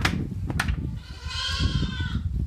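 A goat bleats once, a long, steady call starting a little past halfway in, over low rumbling scuffs of handling and movement, with a couple of sharp knocks earlier.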